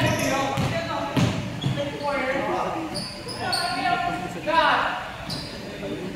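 Basketballs bouncing with irregular thuds on a hardwood gym court, echoing in the large hall, with players' voices mixed in.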